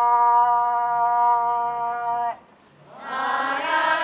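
Kiyari, a traditional Japanese work song: a single singer holds one long, steady note that breaks off a little over two seconds in, and after a brief pause a group of voices comes in together in response.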